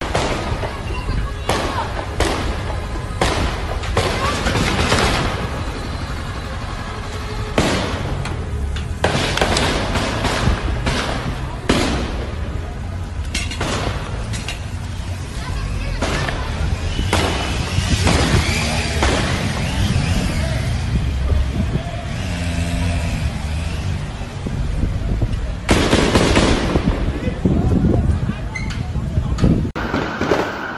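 Gunfire in a street shootout: repeated sharp gunshots and bursts at irregular intervals, louder and denser near the end, over a steady low rumble.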